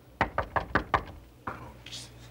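Knocking on a hotel room door: a quick run of about five knocks, then one more knock a moment later.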